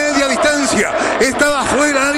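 Speech only: a man's voice giving Spanish-language radio football commentary.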